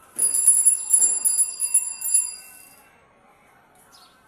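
Bicycle bell on a pedal trishaw rung rapidly, about six strikes a second for roughly two seconds, its high ringing fading out about three seconds in.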